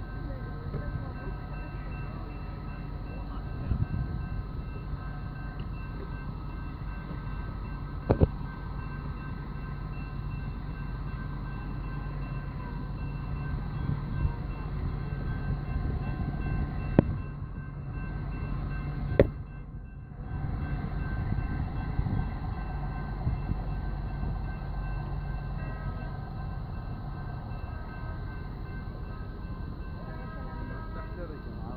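Busy street beside a bus and light-rail stop: a steady low drone of heavy transit vehicles running, with faint steady whining tones above it, broken by three sharp knocks.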